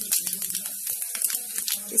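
Cumin seeds sizzling and crackling in hot oil in a small tempering (tadka) pan, a dense run of quick little crackles as the seeds fry.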